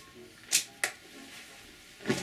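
Two brief handling noises about a third of a second apart: a quick swish followed by a short click.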